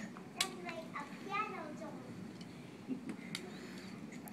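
A faint voice in the background, high-pitched like a child's, with a sharp click near the start and a few smaller clicks and knocks.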